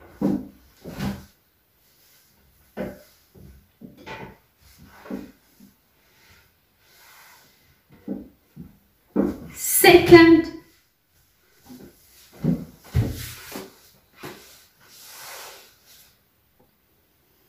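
Soft knocks and rustles of folded clothes being set down and squared into piles on a wooden wardrobe shelf, with short indistinct voice sounds; the loudest is a brief voiced sound falling in pitch about ten seconds in.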